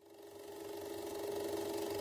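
A steady, rapid mechanical rattle with a low hum, fading in from silence and growing gradually louder.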